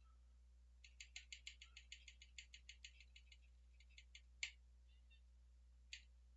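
Faint computer mouse clicks: a quick run of about fifteen light clicks, roughly six a second, then a few single clicks, the loudest about four and a half seconds in.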